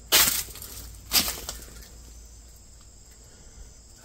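Two brief crunches, about a second apart, then quiet room tone: footsteps on dry leaves and debris.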